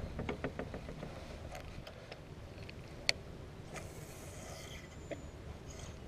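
Fishing tackle being handled in a small boat: a run of faint clicks and taps in the first second, a sharper click about three seconds in, and a soft brief rush of noise just before the fifth second.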